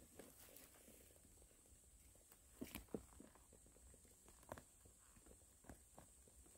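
Near silence, broken by a few faint, brief rustles: a small cluster about two and a half seconds in, then two more single ones near the end.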